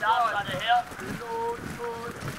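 Indistinct shouted voices with a long, steadily held call through the second half, over wind on the microphone.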